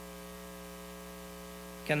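Steady electrical mains hum, a low buzzing tone with a ladder of evenly spaced overtones, carried through the podium microphone and sound system. A man's voice comes in near the end.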